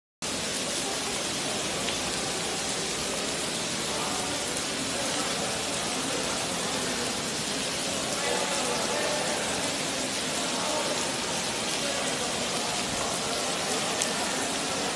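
A steady, unbroken rush of water from heavy rainwater flooding in, with faint voices underneath.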